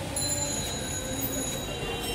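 Magnetic elliptical exercise bike being pedalled, giving a steady high-pitched whine that sets in just after the start, with voices in the background.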